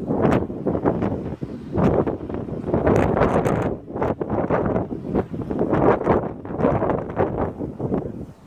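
Wind buffeting the phone's microphone, rising and falling in irregular gusts.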